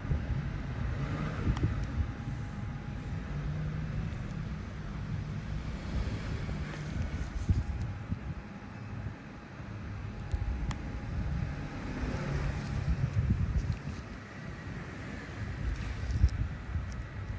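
A low, irregular rumbling noise that fluctuates in loudness, with a faint steady hum above it.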